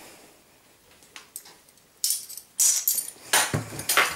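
Kitchen utensils being handled: a few faint clicks, then short rattling clatters about halfway through, as a spoon of olive oil goes into a stainless-steel mixing bowl and a glass bottle is set back on the counter.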